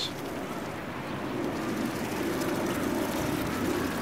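Steady, even outdoor background noise with no distinct events, growing a little louder partway through.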